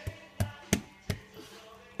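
Brioche dough being slapped down by hand on the work surface: three sharp slaps in quick succession, about a third of a second apart.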